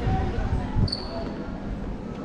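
Footsteps thudding on stone paving at walking pace, with passers-by talking and a short high chirp about a second in.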